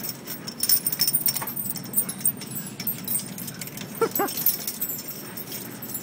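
Hay rustling with scattered sharp clicks and clinks as a small animal tumbles in it, then two short rising cries from a small animal about four seconds in.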